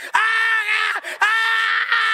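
A man screaming "ah!" into a handheld microphone, imitating a woman crying out to Jesus: two long held cries at a steady pitch, the second starting about a second in.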